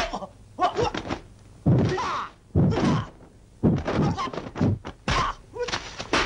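Film fight sound effects: a run of loud dubbed punch and kick impacts, about one a second, mixed with the fighters' shouts and grunts.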